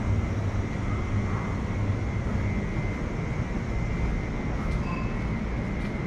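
Steady low rumble of a train running over the steel railway viaduct overhead.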